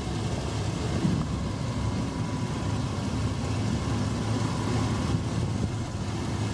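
A 2001 Dodge Ram 1500's 3.9-litre V6 idling steadily and quietly with the hood open, a low even hum.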